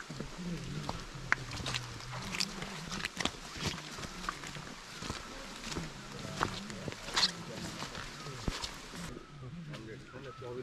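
Footsteps scuffing and clicking on a stony, leaf-covered forest trail, with low voices talking in the background. A steady rustling hiss drops away about nine seconds in.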